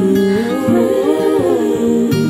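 Acoustic guitar playing with a wordless hummed vocal melody over it, the melody rising and then falling.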